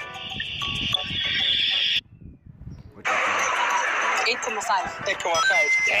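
Audio of the clips being reacted to: music with steady tones that cuts off abruptly about two seconds in, about a second of near silence, then a hissy recording with voices talking.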